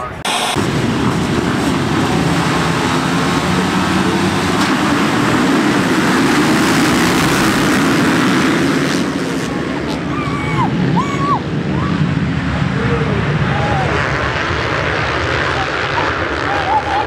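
A full field of motocross bikes accelerating hard together, a dense, loud mass of engines that eases off after about ten seconds. A few shouts from onlookers come near the end.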